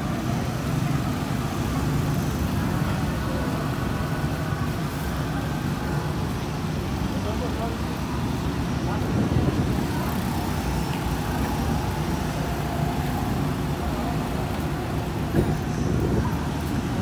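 Amusement park ambience: a steady low rumble with faint distant voices.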